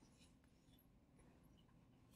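Near silence: room tone with a few faint, brief light scratches.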